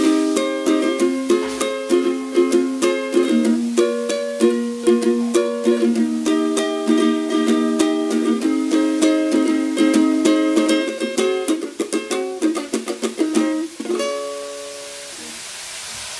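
Four-string ukulele strummed chords in a quick, steady rhythm. Near the end it stops on a last chord that rings out and fades.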